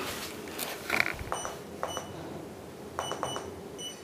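Handheld laser distance meter taking room measurements: a few button clicks and short high electronic beeps, in two groups about a second and a half in and again near the end.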